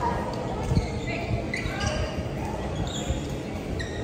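Badminton play in a large, echoing indoor hall: court shoes squeaking on the floor several times, with thuds of footfalls and shuttlecock strikes, over a hubbub of voices.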